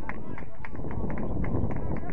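Footballers calling and shouting across the pitch in short, distant bursts during open play, over a steady low rumble.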